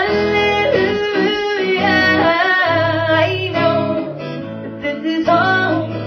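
A woman singing solo with her own acoustic guitar accompaniment, holding long notes.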